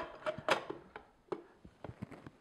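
Plastic parts of an Omega Juice Cube juicer clicking and knocking as the end cap is pushed and twisted onto the auger housing: a handful of short clicks, the loudest about half a second in.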